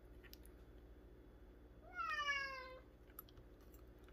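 A house cat meowing once, about two seconds in: a single call under a second long that falls in pitch.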